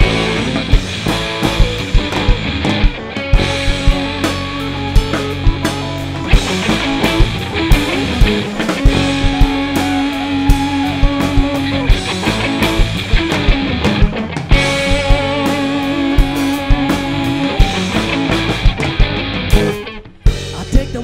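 Live rock band playing an instrumental passage: electric guitars with long held notes over bass guitar and a steady drum-kit beat.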